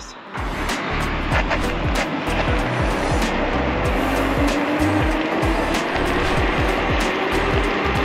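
Electric scooter accelerating hard from a standstill: wind buffeting on the handlebar microphone, with the dual motors' whine rising slowly in pitch over the second half as the speed climbs toward 25 mph.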